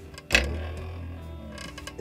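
A wooden desk knocked and creaking: a sharp thump about a third of a second in, then a low creak that fades away over about a second.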